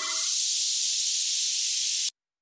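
Audio clip played back from the DAW: a steady, high hiss-like noise sample coming up to full level at the end of a crossfade from the previous clip.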